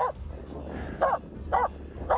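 A Finnish Spitz giving three short yips: one at the start, then two more about a second in and a half-second later.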